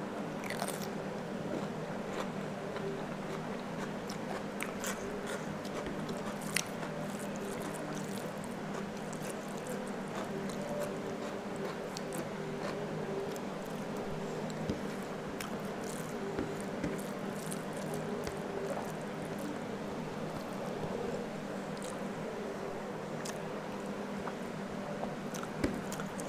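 Close-miked eating sounds: biting and chewing, starting with a raw cucumber slice being crunched, then fingers working rice and curry on a plate. Scattered short clicks and crackles sit over a steady low hum.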